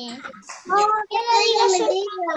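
A young child singing in a sing-song voice, holding a long note in the second half.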